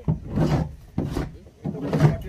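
A person chewing a piece of jaggery right at the microphone: three short, rough crunching bursts about two-thirds of a second apart.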